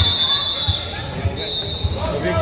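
A referee's whistle blown twice, a long blast and then a shorter one, over a basketball bouncing on the hardwood floor about every half second.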